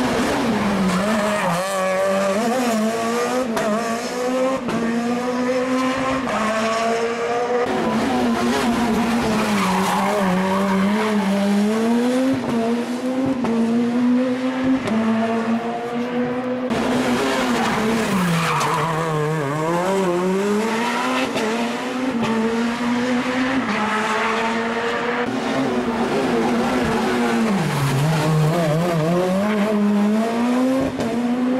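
Rally car engine at full stage pace, its revs climbing and falling again and again through the gears, with two deep drops in revs as it slows for corners, the second near the end.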